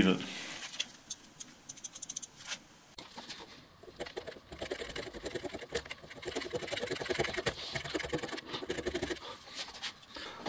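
Hand scraper working the cast-iron base of a mini-lathe headstock to relieve a high spot: a few light clicks, then from about four seconds in a quick run of short scrapes, several a second.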